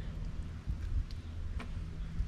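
Hands handling a freshly gutted coral trout: two small sharp clicks, about a second and a second and a half in, over a low rumble and a steady low hum.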